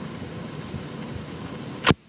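Steady hiss and noise left on the recording after the rock song has ended, with one sharp click near the end as the track is cut off.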